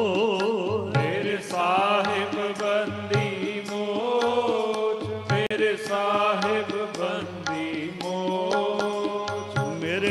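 Sikh shabad kirtan: male voices singing a devotional hymn over two harmoniums, with tabla strokes beneath.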